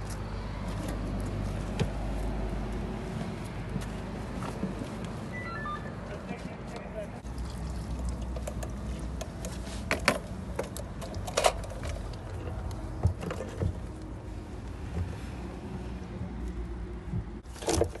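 Sharp knocks and clicks of hands working at a car's opened fuel tank, over a steady low rumble and muffled voices in the background.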